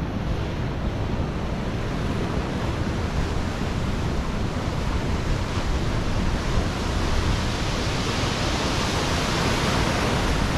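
Surf breaking on rocks and washing into a gully, a steady rushing noise, with wind rumbling on the microphone.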